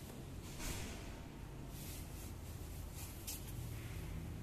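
Faint rustle of a braided synthetic rope sliding through hands as a figure-eight follow-through knot is handled, with a few brief swishes, about half a second in, near two seconds and just past three seconds, over a low steady hum.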